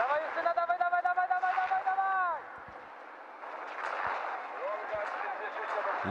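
A trackside spectator's long shouted cheer, one high call held for about two seconds that then falls away, over a faint background of crowd and course noise; a shorter call follows about five seconds in.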